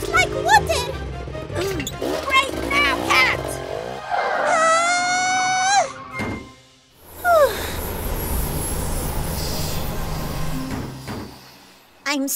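Cartoon soundtrack: music with vocal sounds, then one held, slightly rising note. After a brief dip, a steady rushing noise runs until shortly before the end.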